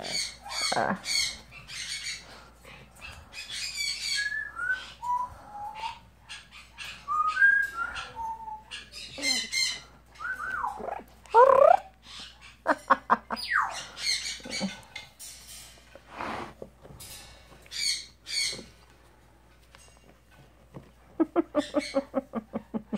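Yellow-naped Amazon parrot calling in short bursts: harsh squawks mixed with whistled notes that slide up and down, with quick runs of clicks about halfway through and again near the end.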